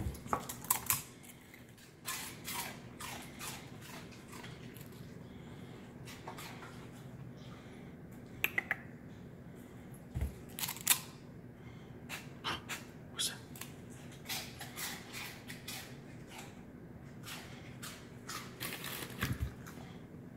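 A dog crunching and chewing crispy puffed cinnamon twists, many short irregular crunches and clicks in clusters, with a faint steady hum underneath.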